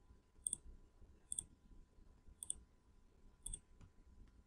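Faint computer mouse button clicks, four of them about a second apart.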